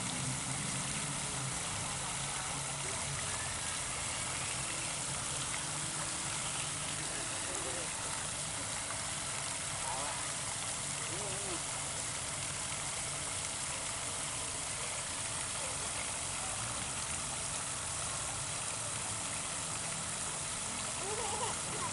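Fountain jets splashing steadily into a stone basin, a constant rushing of water. A few faint, brief voice sounds rise over it now and then.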